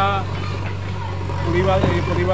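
A man speaking over a steady low engine hum, typical of a JCB backhoe loader's diesel engine running in the background.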